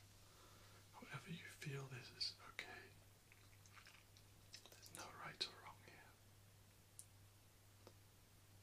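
Soft whispering and wet mouth sounds in two short spells, about a second in and again about five seconds in, with a faint click near the end, over a faint steady low hum.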